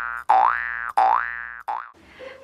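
Cartoon-style 'boing' sound effect repeated in quick succession, each a springy tone rising in pitch and cut off abruptly, about two-thirds of a second apart.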